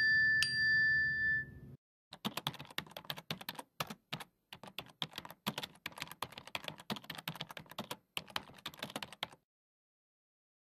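Keyboard typing sound effect: rapid, irregular key clicks that run from about two seconds in until shortly before the end. It is preceded by a short ringing chime at the start.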